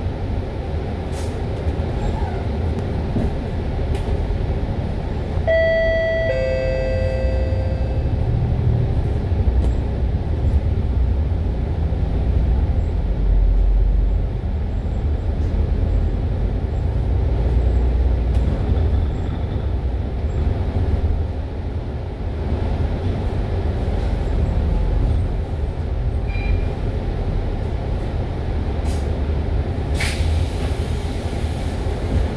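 MAN A95 Euro 5 double-decker bus under way, heard from inside: steady engine and road rumble. About six seconds in, a two-note ding-dong chime sounds, high note then low.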